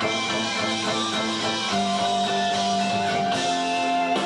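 Guitar-led rock music with sustained chords that change a couple of times, and a long held high note entering about halfway through.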